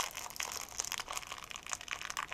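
Small plastic packaging crinkling and crackling in irregular bursts as fingers work at it, trying to tear it open; it is a bit difficult to open.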